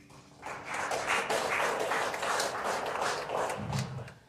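A congregation applauding, many hands clapping together. The clapping starts about half a second in and stops sharply at the end.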